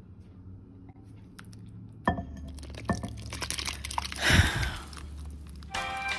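Wet batter ingredients with chopped apple scraped from one mixing bowl into a bowl of flour with a silicone spatula. A few sharp clinks of bowl and spatula come about two and three seconds in, then a wet splat as the mixture drops in a little past four seconds.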